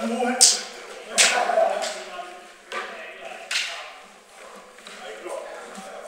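Fencing bout on a wooden floor: about four sharp knocks and clashes in the first four seconds, from blades meeting and feet stamping, with voices around them in a large, echoing hall.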